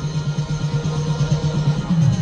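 Music with drums and a held low bass note, no voice over it.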